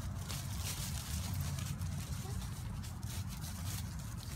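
Footsteps rustling through dry fallen leaves, a string of short crunches over a steady low rumble.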